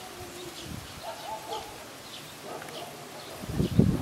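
Outdoor ambience with birds calling in the background: short high chirps about twice a second, and a few lower, longer call notes in the first half. A man's voice comes in near the end.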